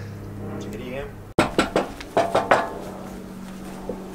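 A quick run of about five sharp, clattering knocks of hard objects, the loudest sounds here, starting about a second and a half in after an abrupt cut.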